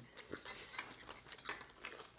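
Faint eating sounds: a few scattered soft clicks and ticks as tacos are chewed and handled.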